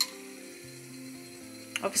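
Soft background music of held notes that change pitch every half second or so, with a single sharp click at the very start.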